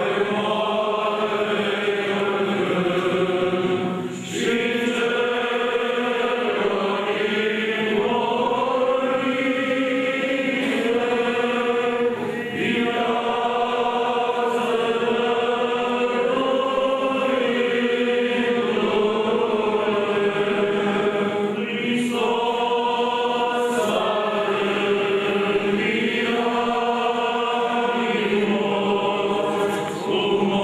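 Eastern Orthodox memorial-service (parastas) chant sung by a group of voices together, in long held phrases with short breaks about four, twelve and twenty-two seconds in.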